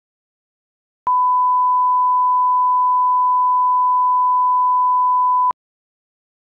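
Electronic test tone: one steady pure pitch that switches on about a second in and cuts off sharply after about four and a half seconds, with a click at each end.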